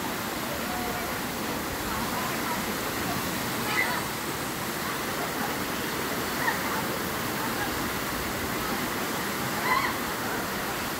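Steady rush of water pouring down a natural granite rock slide, with a few brief distant shouts and voices of people sliding in it.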